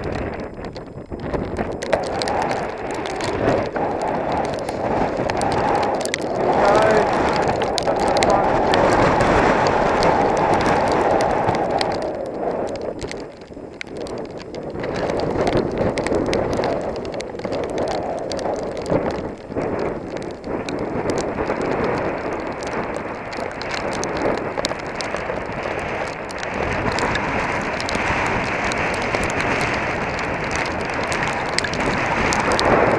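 Heavy wind buffeting the microphone of a helmet camera on a mountain bike descending a wet, muddy trail in a storm, with many small clicks and rattles from the bike over the rough ground. The rushing noise eases briefly near the middle, then builds again.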